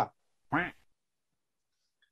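The end of a spoken word, then a single short vocal sound from a man, rising and falling in pitch, about half a second in; silence for the rest.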